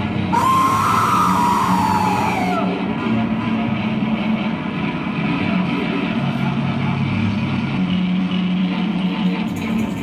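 Loud live heavy-metal-style band music: a sustained low droning noise with no clear beat, and a high wavering tone that rises and then falls over the first two or three seconds.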